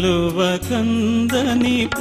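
Telugu Christian devotional song: a solo singer holding and bending long, drawn-out notes over steady instrumental backing.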